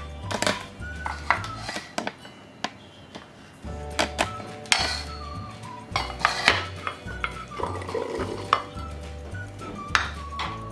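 Steel mixer-grinder jar clinking and knocking as it is opened and set down, then shelled green peas poured in, rattling against the steel, over background music.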